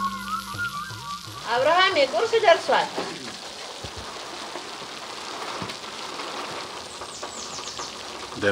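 Steady rain falling, an even hiss that runs under a woman's voice.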